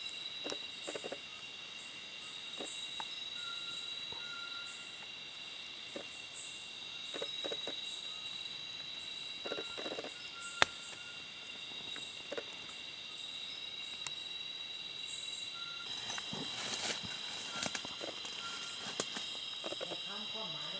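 Chorus of crickets and other insects: two steady high trills run on, with a higher pulsed call repeating about once a second and a few faint clicks.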